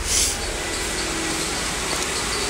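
Steady low rumble with an even hiss, and a short rustling hiss just after the start.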